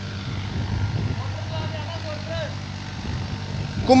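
Steady low hum of a running motor, with a faint voice briefly in the middle.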